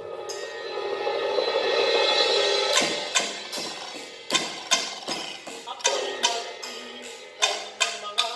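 Live ensemble music: a sustained chord swells and fades over the first three seconds, then a steady run of sharp, ringing percussion strokes, about two to three a second, with a held tone coming back under them near the end.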